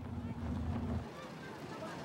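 Low rumble of a moving vehicle, with wind buffeting the microphone. It drops away about a second in, leaving a faint hiss.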